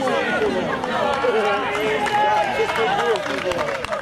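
Several voices of footballers and spectators shouting and calling over one another.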